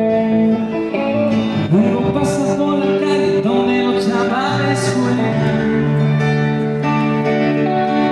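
Live pop-rock music from a keyboard-and-guitar duo, amplified through a PA: electric guitar and stage keyboard playing as piano, with a man singing.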